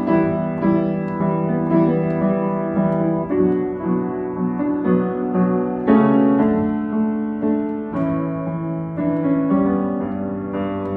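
A 1994 Yamaha U1 upright piano played acoustically: flowing sustained chords, a new chord struck every second or two and left to ring into the next.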